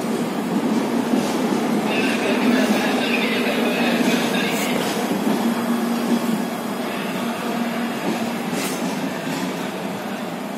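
Express passenger train running through a station without stopping: a steady rumble of coach wheels on the rails, with a high wheel squeal between about two and five seconds in. The sound eases a little near the end as the last coach passes.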